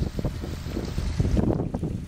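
Engine of a rock-screening machine with a conveyor belt, running steadily as a low rumble, with a few short knocks at the start like rocks dropping onto the pile. Wind buffets the microphone.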